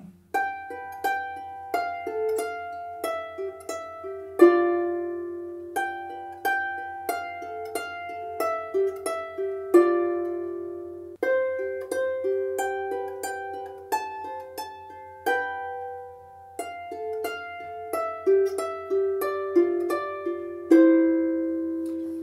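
Rees Harps Sharpsicle lever harp played with both hands: a slow tune of plucked notes, often two at once, each ringing and fading. The tune falls into phrases that each end on a louder, longer-held note.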